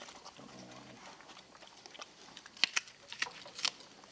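A pig eating apples from a trough: a short low grunt about half a second in, then a few sharp crunches as it chews the apples in the second half.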